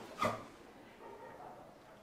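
A single short voice sound, like a brief murmur, a quarter second in, then quiet room tone in a small room.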